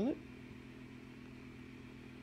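A steady low background hum, even and unchanging, after the end of a spoken word right at the start.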